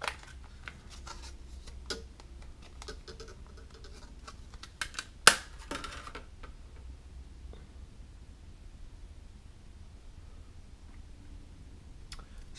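Clear plastic CPU clamshell case being handled and opened: a run of small crackling clicks, with one sharp snap about five seconds in, then only faint handling sounds.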